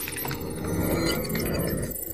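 Film soundtrack sound effects: a couple of sharp clicks near the start, then a rushing noise with faint high-pitched electronic chirping.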